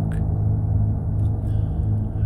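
Low, steady droning background music, with no other sound standing out.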